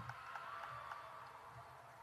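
Faint basketball-gym sound: a few light knocks and short squeaky glides over a low murmur.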